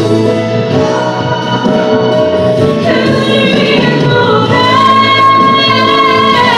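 A solo female vocalist sings a gospel song through a microphone and PA over instrumental accompaniment. The accompaniment carries the first half. Her voice comes in loudly about halfway through, on long, high held notes with vibrato.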